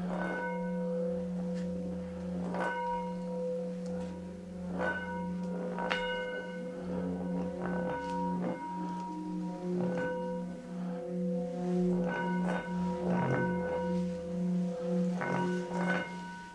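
Antique singing bowl filled with water, rubbed around the rim with a suede-covered wooden mallet and singing a steady low hum. Brighter overtones above the hum swell and fade, and a short scratchy tick from the mallet comes every second or two. The bowl vibrates hard enough to make the water inside spray up and bubble as if boiling.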